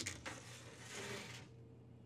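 Metal sheet pan sliding onto an oven rack: a light click, then a soft scrape lasting about a second.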